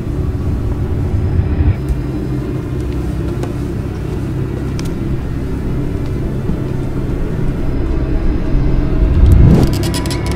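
Low, rumbling suspense-score drone of sustained bass tones, with a rising swell that builds to a peak near the end.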